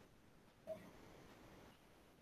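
Near silence: room tone, with one brief faint sound under a second in.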